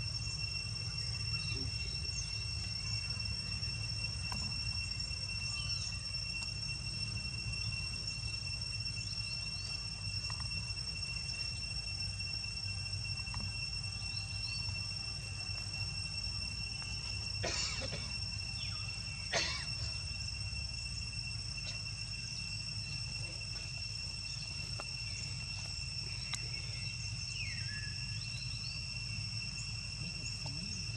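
Insects droning steadily at one high pitch over a low outdoor rumble, with two short sharp sounds a little past halfway.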